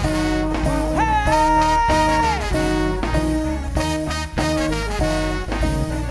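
Live soul-jazz band playing an up-tempo groove on drums, bass and electric keyboard. About a second in, a high note slides up, is held for over a second, then drops away.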